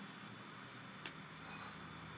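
Faint room tone in a pause between spoken cues, with a single soft click about a second in.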